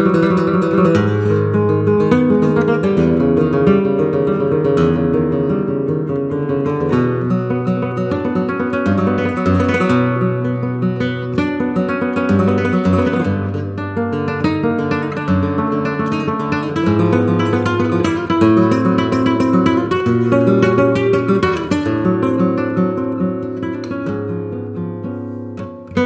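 Solo flamenco guitar, a 1969 Francisco Barba of cypress with a German spruce top, playing a taranta: plucked melodic runs over ringing low bass notes. There is a short drop in volume near the end.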